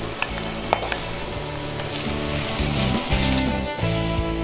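Sliced shallots frying in oil in a nonstick pan, with a steady sizzle and a spatula stirring them near the end. There is one sharp click a little under a second in.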